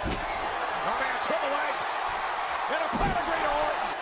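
Televised wrestling audio: steady arena crowd noise with a commentator's voice over it, and a heavy thud in the ring at the start and another about three seconds in.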